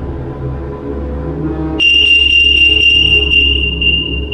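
Low, dark ambient music drone; about two seconds in, a steady high-pitched electronic tone starts abruptly and holds, louder than the music.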